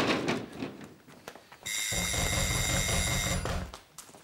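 A sharp bang right at the start, then an electric doorbell buzzer rings once, steadily for nearly two seconds, and cuts off. The ring means someone is at the front door.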